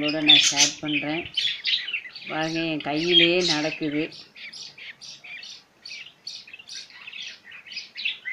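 Lovebirds chirping in short high-pitched calls, repeating about three times a second in the second half, with a person's voice over them in the first half.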